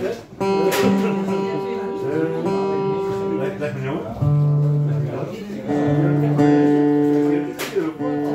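Live acoustic guitar strummed, with a melody of long held notes over it that changes pitch every second or two.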